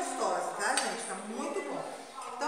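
A metal serving spoon clinks against a metal pot once as rice is scooped onto a plate, under a voice talking.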